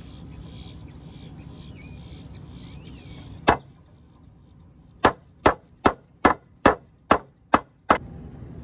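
Claw hammer driving a nail into a wooden step board: a single blow, then after a short pause a run of eight quick, even blows, about two and a half a second.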